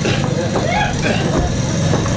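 A steady, low engine drone with faint voices over it.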